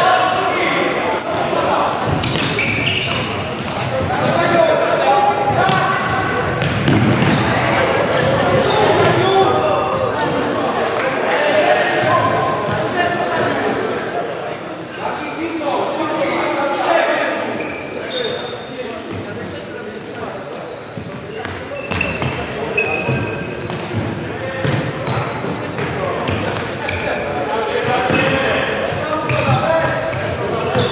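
Indoor futsal play on a wooden sports-hall floor: the ball being kicked and bouncing, short high squeaks of shoes on the court, and players calling out, all echoing in the large hall.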